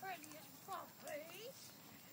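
Maltipoo puppies whimpering: a few short, faint high whines that rise and fall in pitch.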